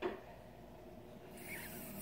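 Quiet room tone with a short click right at the start and a soft, breathy hiss in the last half-second, a man drawing breath before he speaks.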